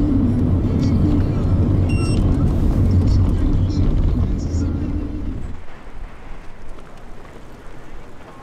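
Taxi cabin noise while driving: a steady low engine and road rumble that cuts off about five and a half seconds in, giving way to much quieter open-air street ambience.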